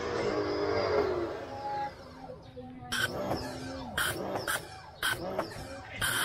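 Kawasaki HPW 220 pressure washer spraying soapy water through its foam bottle attachment. From about three seconds in the spray comes in short spurts, the sign that the pump's water intake is running short with the soap attachment on.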